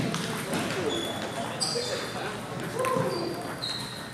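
The sound of a busy table tennis hall: a background murmur of many voices, with light knocks and short high pinging tones from play.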